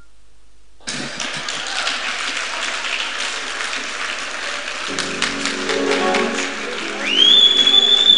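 A congregation applauding, a dense patter of clapping that starts about a second in. Music joins about five seconds in, and near the end a single high tone rises and holds.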